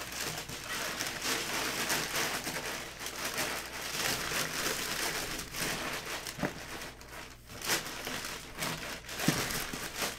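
Crumpled brown kraft packing paper being rustled and crinkled by hands digging through it in a cardboard box, with a few sharper crackles.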